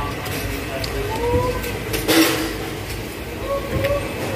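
Steady low rumble of background room noise, with a few short, faint hums of a voice and a brief rustling burst about two seconds in.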